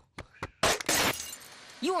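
A sudden loud crash like breaking glass about half a second in, followed by a steady hiss of TV static. A voice starts speaking at the very end.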